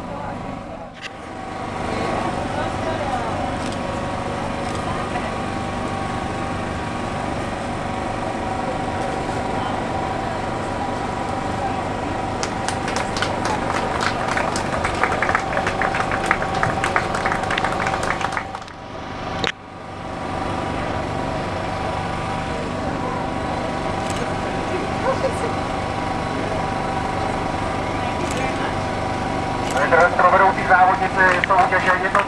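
A crowd clapping for several seconds around the middle, over background voices and a steady hum.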